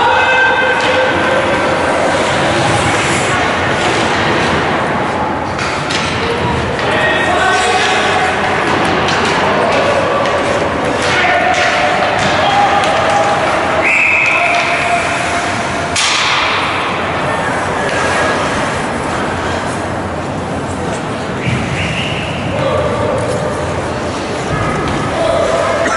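Ice hockey rink sound during play: spectators shouting and calling out over a steady din. Stick, puck and board hits give scattered thumps and slams. A shrill whistle blast sounds around the middle and another near the end, as play is stopped.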